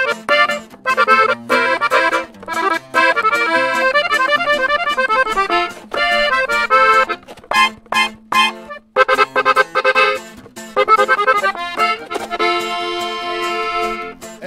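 Norteño music played live on a diatonic button accordion with guitar accompaniment: a quick instrumental accordion passage between sung verses, with no singing. It ends on a long held accordion chord.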